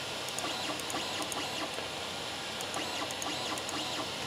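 Creality Ender 3 3D printer's stepper motors driving an axis: a steady, super noisy motor whine with faint ticking. The loudness is the sign of its 8-bit mainboard's older, non-Trinamic stepper drivers; it is not a silent board.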